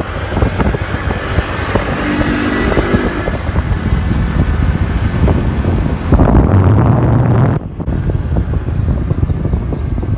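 Motorbike ride: the engine running with wind rushing over the microphone and road noise. The sound grows louder about six seconds in, then drops off suddenly a second and a half later.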